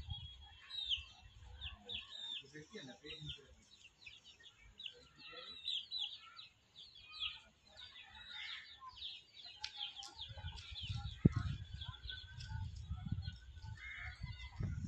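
Young chickens peeping: a steady run of short, high cheeps repeated every fraction of a second. A low rumble joins in the second half.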